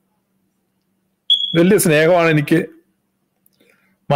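A man's voice speaking one short phrase from about a second and a half in, with dead silence before and after it. A brief, high-pitched steady tone sounds just before the words.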